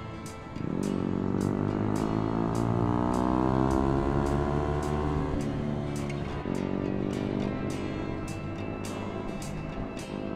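Motorcycle engine accelerating through the gears: the revs climb from about half a second in, drop at a gear change near the middle, then climb again. Background music with a steady beat plays throughout.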